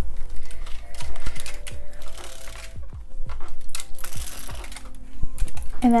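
Irregular clicks and rustles of hands, arms and clothing brushing against a clip-on microphone while hair is smoothed into a high ponytail, with two brief hissy rustles.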